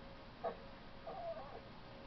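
A cat's short, wavering meow about a second in, faint and heard through a television's speaker, with a brief sharp sound just before it.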